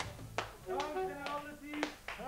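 Four or so sharp taps, unevenly spaced, with voices calling out between them.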